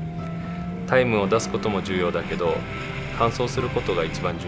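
A man speaking Japanese starts about a second in, over the steady drone of the turbocharged GReddy Scion tC race car's engine running.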